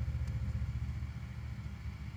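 Vehicle engine idling: a steady low rumble with fine, even pulsing.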